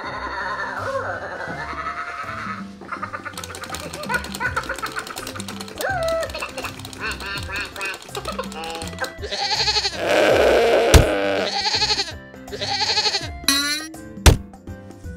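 A talking Minion toy chattering and laughing in high-pitched Minion gibberish over upbeat background music, with louder bursts of sound near the end.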